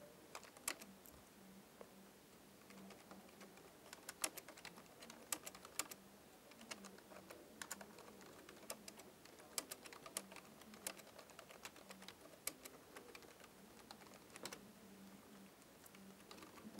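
Typing on a computer keyboard: faint, irregular keystrokes coming in uneven runs.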